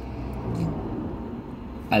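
Car engine idling, a steady low hum heard inside the cabin.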